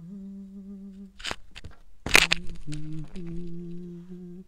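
A man humming a slow wordless melody in long, steady, low held notes with short breaks between them. A brief loud burst of noise cuts in about two seconds in.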